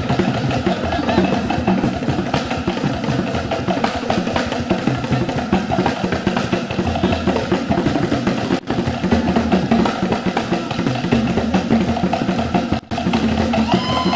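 A group of traditional skin-headed hand drums played live by a cultural troupe's drummers, keeping up a dense, steady dance rhythm. The sound drops out for an instant twice in the second half.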